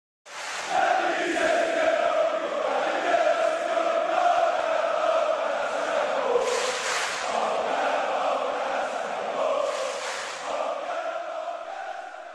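Large crowd of football supporters chanting in unison, a sung melody carried over the crowd's noise. The chant begins just after the start and eases slightly toward the end.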